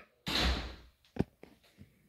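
A single dull thump with a brief rush of noise that fades within half a second, followed by a few faint light clicks.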